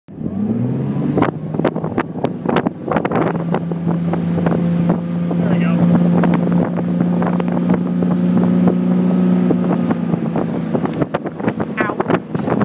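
Ski boat's inboard engine throttling up at the start, its pitch rising as it pulls a water skier up out of the water, then running at a steady pitch at towing speed. Repeated short sharp knocks and wind buffeting on the microphone run over it.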